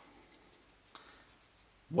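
Faint, soft rustling of a damp cleaner-primer wet wipe being pulled out and unfolded between the fingers.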